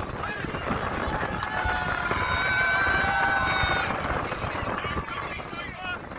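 Dragon boat crew paddling hard, voices shouting over the paddles splashing in the water, with one long held call in the middle.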